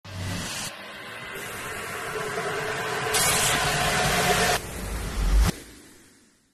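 Logo-intro sound effects: a noisy whoosh that builds and brightens for several seconds, ending in a low boom about five and a half seconds in that cuts off and fades away.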